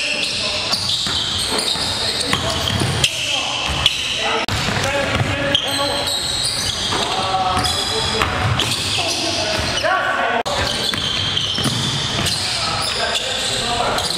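A basketball bouncing on a gym's hardwood floor during live play, echoing in a large gymnasium, with players' voices calling out over it.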